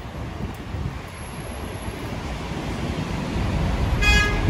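Petrol flowing from a pump nozzle into a motor scooter's fuel tank: a steady rushing hiss that grows slightly louder toward the end.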